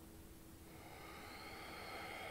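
Faint, slow in-breath through the nose, growing louder through the second half.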